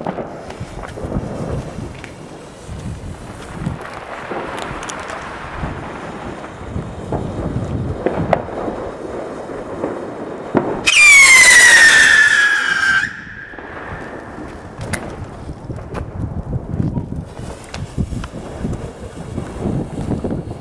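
A 'Brüllende Schwiegermutter' howling firework goes off about eleven seconds in, giving a loud, shrill whistle that falls in pitch for about two seconds and then cuts off suddenly.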